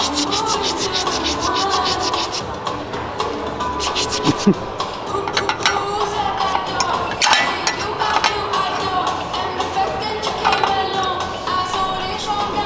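Background music, with a knife and fork scraping and sawing through a crisp pistachio pastry on a ceramic plate: rapid, rasping strokes come in short runs, densest in the first second and again around five and seven seconds in.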